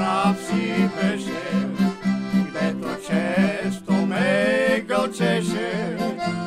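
Accordion-led Bulgarian folk music, with guitar and a steady pulsing bass-and-chord accompaniment under the accordion melody.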